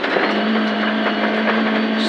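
Proton Satria 1400 rally car's engine heard from inside the cabin, holding one steady note at constant revs, over a steady wash of gravel and road noise.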